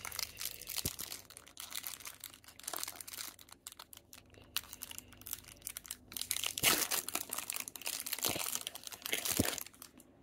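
Foil wrapper of a Pokémon Astral Radiance booster pack crinkling and tearing as it is pulled open by hand, with the loudest crackles about two-thirds of the way in.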